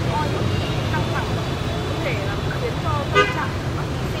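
Steady street traffic rumble with voices over it, and a brief, loud, high tone about three seconds in.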